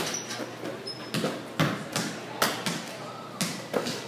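Basketballs bouncing, a series of sharp, echoing thuds roughly every half second, over the chatter of a crowd in a large hall.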